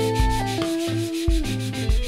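A sanding block is rubbed back and forth by hand over the white spray-painted wooden body of a kit electric guitar, making a steady scratchy hiss. Electric guitar music plays underneath.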